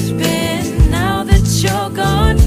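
Pop song playing, with a sung melody gliding over sustained bass and a steady drum beat.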